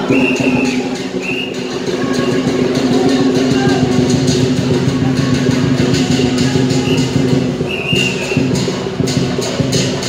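Festive temple procession music: steady held wind notes over percussion, with short high whistle-like notes, and sharp percussion strikes about three times a second starting about eight seconds in.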